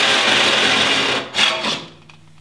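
Reciprocating saw cutting the sheet steel of a Jeep Cherokee XJ rear quarter panel. It runs steadily for a little over a second, breaks off briefly, then gives two short bursts before stopping near the end.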